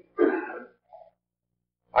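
Someone clearing their throat once, a short rough rasp lasting about half a second, followed by a faint small sound about a second in.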